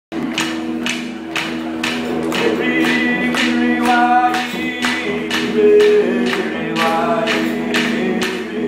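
Didgeridoo playing a steady low drone under a regular beat of clapsticks, about two strikes a second, with a voice singing in two phrases over it.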